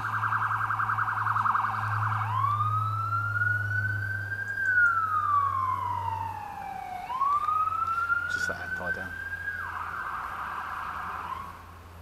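Emergency vehicle siren: a fast warble for about two seconds, then a slow wail rising and falling in pitch, rising again and holding, before it fades out near the end.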